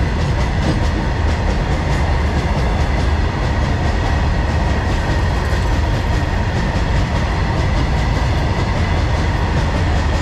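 Freight train of open steel box wagons rolling past close by: a steady, loud rumble of wheels on rail with repeated clickety-clack as the wheels run over the rail joints.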